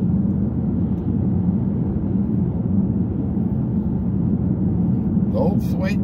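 Steady low road rumble of a moving vehicle, heard from inside its cabin while driving at highway speed.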